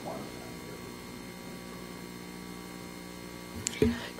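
Steady electrical mains hum on the room's audio system, a low buzz with no other sound over it, broken by a click just before the end.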